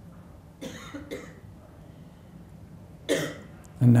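Coughs: two short coughs about half a second apart, starting a little over half a second in, then a louder cough about three seconds in, over a low steady room hum.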